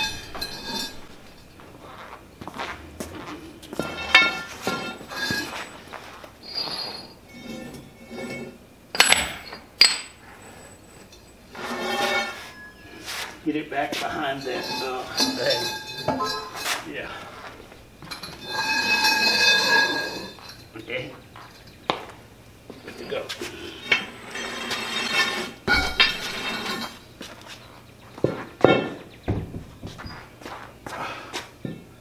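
Steel pipe rollers and a long steel bar clinking and knocking against each other and the concrete floor. The sharp metallic clinks come irregularly, with the loudest ones about nine seconds in and near the end, as a heavy machine base is levered along on the rollers.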